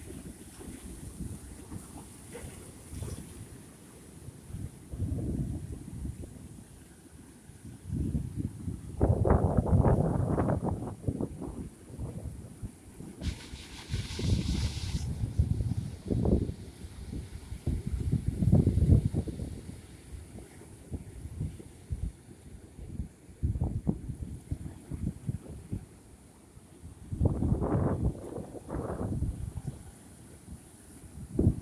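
Wind buffeting the microphone in irregular gusts, over surf breaking and washing against rocks. A brief higher hiss a little before halfway.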